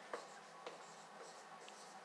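Faint strokes of a dry-erase marker writing on a whiteboard, with a few brief taps and scrapes of the tip.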